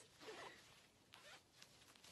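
Faint rustle of clothing as hands handle the pocket of athletic shorts, with a few soft scrapes of fabric.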